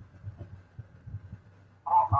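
Computer keyboard typing: soft, irregular key taps, several a second. A voice starts speaking right at the end.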